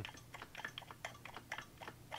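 Faint, irregular small clicks and scrapes of a screwdriver tip in the slotted motor shaft of a Kozyvacu TA350 vacuum pump as it is rocked back and forth by hand. The shaft moves only about a sixteenth of a turn each way before locking: the pump is seized inside.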